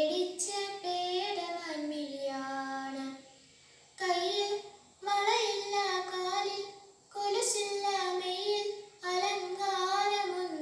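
A young girl singing a Malayalam song solo and unaccompanied, in long held notes with a slight waver, phrase by phrase, with short breaks for breath; the longest break comes about three seconds in.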